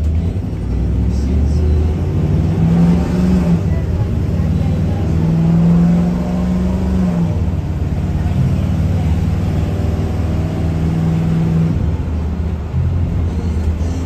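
A small bus's engine and road noise heard from inside the passenger cabin as the bus pulls away and gets under way. The engine note climbs and holds for a few seconds, drops about seven seconds in, then climbs and holds again.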